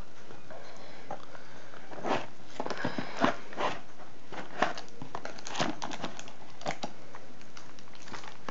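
Hands handling a headphone box and its packaging: irregular rustling with scattered light knocks and clicks, over a steady faint hiss.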